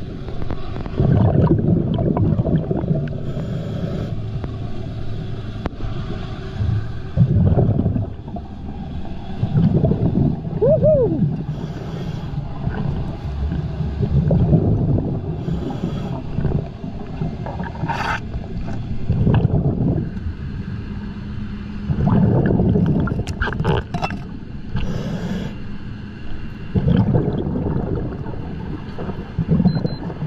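Scuba diver breathing through a regulator underwater: gurgling bursts of exhaled bubbles every few seconds, with short hissing inhalations in between and a faint steady low hum underneath.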